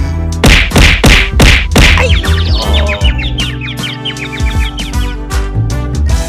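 Cartoon sound effects: five loud whacks in quick succession, about a third of a second apart, followed by a rapid run of short high bird-like chirps, over background music.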